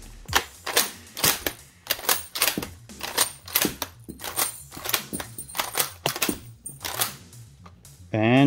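Turkish M38 Mauser's bolt being cycled by hand, over and over: a series of metallic clicks and clacks as the bolt is lifted, drawn back and run forward, chambering and ejecting the snap caps from the magazine until it is empty.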